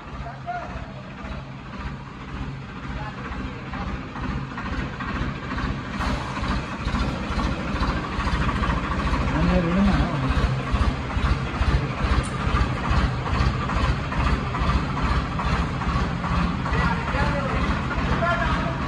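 Swaraj 969 FE tractor's three-cylinder diesel engine running with a steady, fast firing beat, growing louder over the first ten seconds as the tractor comes closer, then holding steady.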